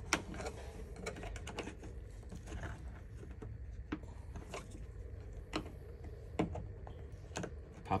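Plastic pillar trim and its two-stage body clips clicking and tapping as they are pried and worked loose with a plastic clip removal tool: a string of light, irregularly spaced clicks.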